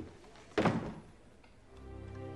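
A door shutting with a single thunk about half a second in. Soft background music begins near the end.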